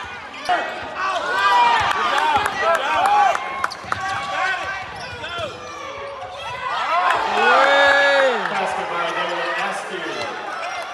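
Basketball play on a hardwood court: sneakers squeak in many short rising-and-falling chirps, with the ball bouncing and a few voices. A longer, louder squeak or shout comes about eight seconds in.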